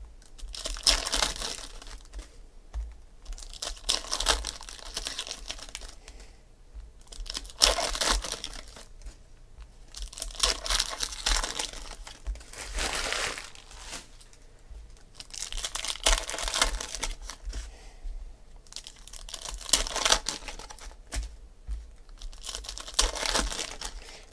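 Foil wrappers of Panini Donruss Optic football card packs crinkling and tearing as they are opened by hand, in repeated bouts of a second or two with short pauses between.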